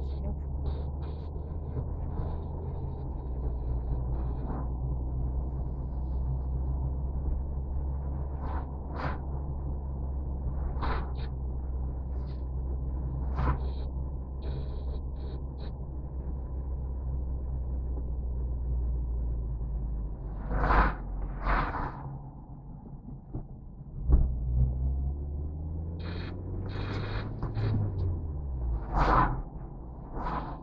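Car engine and tyre noise heard inside the cabin while driving: a steady low hum. It falls away about two-thirds of the way through, then comes back with a rising engine note as the car pulls away again.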